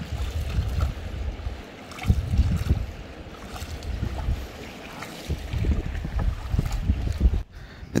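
Wind buffeting the microphone in irregular low gusts, over the rush of water around a small paddled wooden boat on a fast ebb-tide river.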